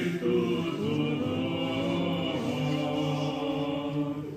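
Orthodox liturgical chant sung by several voices in long held notes that move slowly from pitch to pitch.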